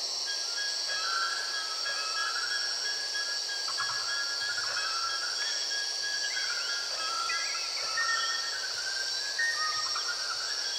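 A field recording of insects and birds: a steady, high-pitched insect chorus runs throughout, with short whistled bird calls and chirps coming and going over it.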